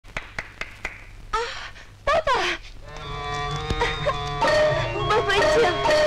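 A few quick hand claps, then two short, rising exclaimed cries from a voice; about halfway through, film-score music comes in with held notes.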